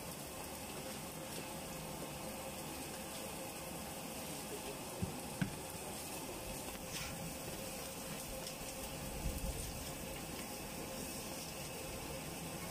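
A faint, steady sizzle of food frying on a burger stall's hot griddle, with a couple of small clicks about five seconds in.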